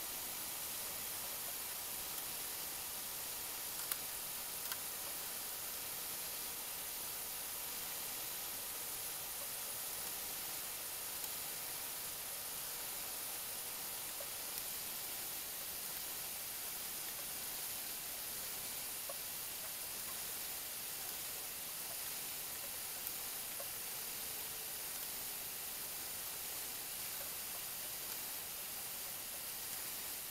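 Steady background hiss, with a few faint clicks as the work is adjusted in a four-jaw lathe chuck with a chuck key.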